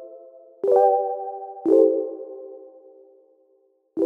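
Background music: soft electronic keyboard chords, a new chord struck about a second in and another about a second later, each fading slowly.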